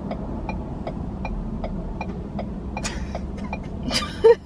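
Steady low hum of a car cabin with the engine running, under a turn signal ticking at an even pace, about two and a half clicks a second. Two sharper clicks come near the end.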